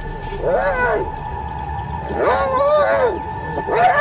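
Spotted hyenas crying out in a fight, one mauled by several: short rising-and-falling cries, one about half a second in, a quick run of three or four between two and three seconds, and another near the end.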